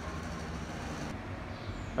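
Steady low rumble of city street ambience: distant road traffic.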